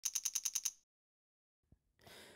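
Short electronic intro sound effect: seven quick, high-pitched pips in well under a second, then near silence.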